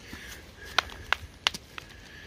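Rock samples being handled with a gloved hand: a few sharp, irregular clicks and knocks of rock on rock in the second half.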